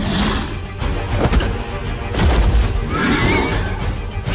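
Dramatic film score with deep booming hits, and a shrill, wavering creature cry about three seconds in: a monster's screech sound effect.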